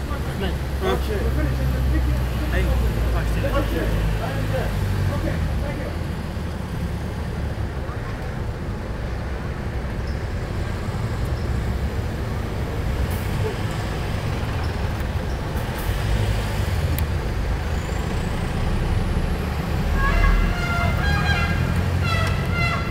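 Indistinct, low conversation among several people over a steady low rumble; a voice becomes clearer near the end.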